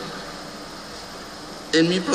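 Steady hiss of background noise with no distinct events, and a man's voice starting again near the end.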